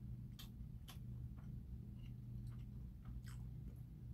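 Quiet eating sounds from a sushi meal: a scattering of short, soft clicks and crunches from food and plastic takeout trays, the two clearest about half a second and a second in, over a steady low hum.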